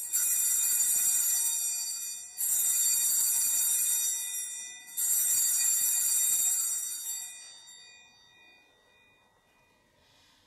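Altar (sanctus) bell rung three times, each ring bright, high and fading away, the last dying out a few seconds later; rung at the consecration of the bread, just after the words 'this is my body'.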